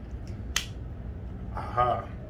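A single sharp click about half a second in, from the plastic gimbal stabilizer being handled and unfolded.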